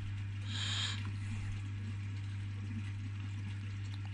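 Steady low hum with a faint hiss of background noise, and a brief soft rush of higher noise about half a second in.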